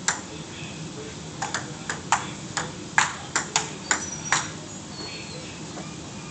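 Ping-pong ball clicking off paddles and the table: a serve, then a quick rally of about nine sharp hits over three seconds that stops about four and a half seconds in.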